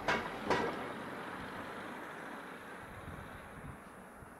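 A car driving past close by, its tyre and engine noise starting suddenly and fading away over a few seconds, with two brief sharp sounds in the first half-second.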